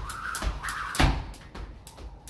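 Jump rope skipping on a concrete floor: the rope slapping the ground and shoes landing in a quick rhythm, about two sharp hits a second, the loudest about a second in.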